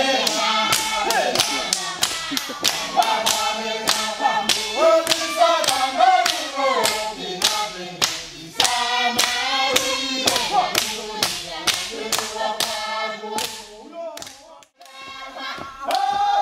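Group of voices singing a traditional Tanna dance chant, with sharp rhythmic hand claps keeping time at about three a second. The singing and claps thin out briefly near the end, then resume.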